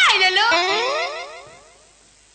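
A pitched 'boing'-type glide, swooping sharply up and then falling away, fading out over about a second and a half.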